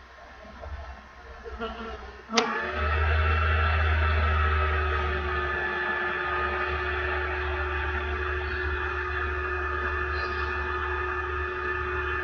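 A click about two seconds in, then a steady buzzing hum: a strong low drone with several held higher tones, like a small motor or appliance running.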